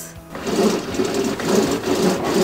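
Cord of a top-down bottom-up blind being pulled hand over hand, running through the head rail and cord lock with a continuous mechanical rattle as the blackout section rises, starting about half a second in.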